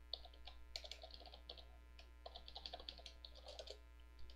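Faint computer keyboard typing: quick, irregular runs of keystrokes with a short pause about halfway through.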